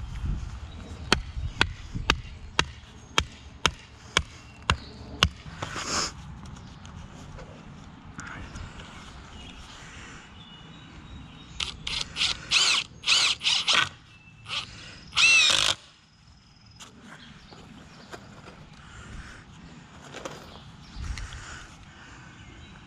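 A series of about nine sharp clicks, roughly two a second, then a Ryobi cordless drill/driver triggered in several short bursts, its motor whirring up and down, the last burst the longest.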